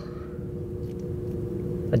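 Steady low drone of a car ferry's engines, with a constant hum, heard from inside a car parked on the vehicle deck.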